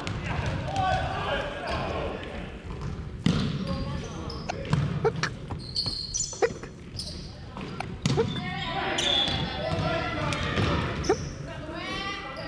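Volleyballs being struck and bouncing in a gym, about five sharp, echoing smacks at irregular intervals of a second or two, with players' voices in the hall around them.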